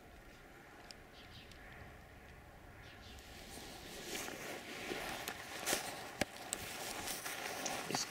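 A few faint high chirps over a quiet outdoor background, then from about three seconds in a louder rustling and crunching with several sharp clicks, the kind of noise made by movement close to the microphone on frosty ground.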